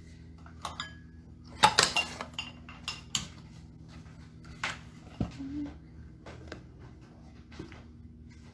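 Dishes and cutlery clinking and clattering as things are cleared off a kitchen counter. A burst of ringing clinks comes about one and a half seconds in, a few more follow up to about three seconds, and then there are scattered single knocks.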